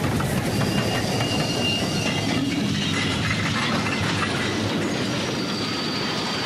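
A railway train running on the track: a steady, continuous noise of wheels on rails, with faint high-pitched squeals of steel on steel coming and going.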